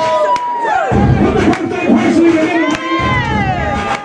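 A crowd of partygoers cheering and shouting, with several long drawn-out yells overlapping.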